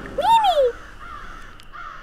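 A single short caw-like call about half a second long, rising and then falling in pitch, followed by a faint hiss.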